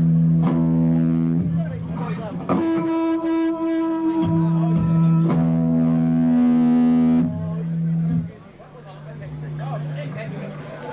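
Live distorted electric guitar and bass playing long, ringing held notes that change pitch every second or two. About eight seconds in the band drops out and a quieter held tone rings on.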